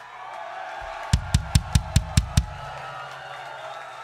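A drum kit struck in a quick run of seven hard, evenly spaced hits, about five a second, starting about a second in, over a concert crowd clamoring and cheering in a club.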